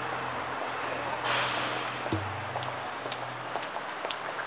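City street traffic noise with a vehicle engine running nearby as a low steady hum, and a short, loud hiss about a second in.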